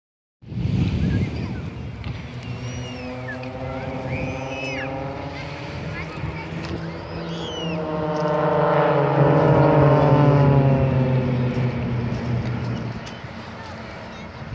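Propeller aerobatic planes flying over in formation, their engines a steady droning hum. The drone swells to its loudest about nine to ten seconds in, with the pitch sliding as they pass, then fades. Short high chirps sound over it in the first half.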